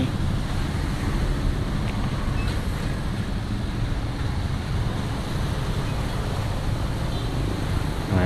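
Motor scooter engine running steadily as it rides through shallow floodwater, with the swish of water from the tyres and wind on the microphone.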